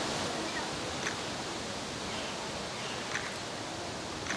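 Steady, even outdoor background noise, a hiss across the whole range, with two faint short ticks, about a second in and near three seconds.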